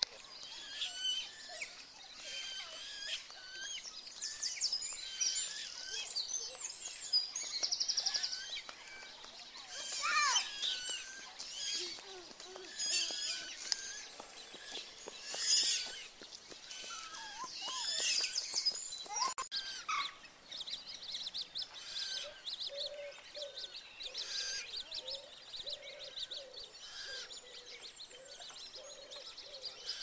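Wild birds singing and calling: a mix of many high chirps, whistles and short trills, with a lower run of repeated notes in the second half.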